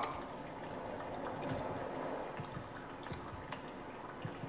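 Faint water trickling and pouring, with scattered small drips.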